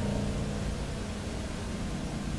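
Steady hiss with a faint low hum: the background noise of a voice recording, with nothing else sounding.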